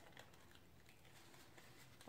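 Near silence, with faint light ticks and rustles of crinkled coffee-filter paper being handled as a petal is pressed onto the glued flower centre.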